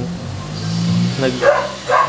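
A young man speaking in Tagalog, with a short pause and a low drawn-out hesitation sound before his next words.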